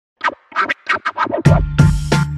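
Turntable scratching in a run of quick, short strokes. About one and a half seconds in, a deep held bass note and hard hits of a hip hop beat come in.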